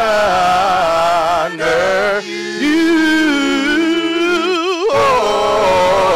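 Women's voices singing a gospel worship song through microphones, in long held notes with a wavering vibrato. Brief breaths between phrases fall about one and a half, two and a half and five seconds in.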